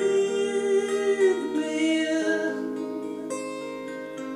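A man singing a long held note over acoustic guitar. His voice trails off about halfway through and the guitar rings on alone, growing gradually softer.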